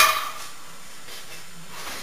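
A loaded barbell touching down on a wooden lifting platform between deadlift reps: one sharp knock at the start with a brief ring. A steady low hiss follows.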